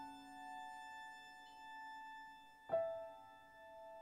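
Soft piano chords on a keyboard in a quiet instrumental passage: a held chord rings and slowly fades, then a new chord is struck about two and a half seconds in and rings on.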